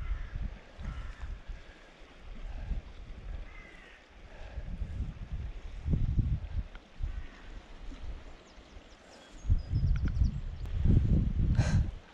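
Wind buffeting the microphone in uneven low rumbling gusts, strongest near the end, with a faint bird call about three seconds in.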